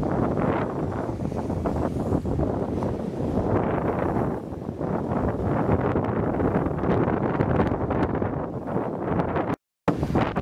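Storm wind and heavy rain: a dense, rushing noise with no rhythm or tone, cutting out for a moment near the end.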